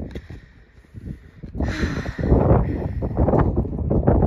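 Wind buffeting a phone microphone, with rustling. It is fairly faint for about a second and a half, then becomes loud, rough and gusty.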